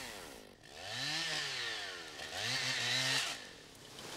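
Chainsaw revving up and back down twice, each rise and fall lasting about a second and a half, as timber is cut.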